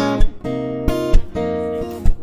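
Acoustic guitar strumming sustained chords, with sharp percussive hits about once a second.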